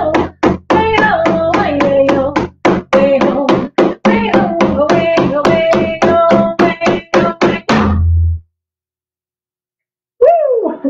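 A woman singing a traditional song over a steady, fast drumbeat of about four to five strikes a second. The song ends about eight seconds in on a last, heavier drum stroke, followed by silence.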